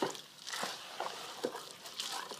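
A thick, wet particle bait mix of seeds and pellets being stirred in a plastic tub: a wet churning of grains, stiff now that it has soaked up its water, with about four short knocks of the stirrer against the tub.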